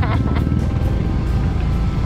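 Steady low rumble of wind and road noise on a moving motorcycle, with background music playing underneath.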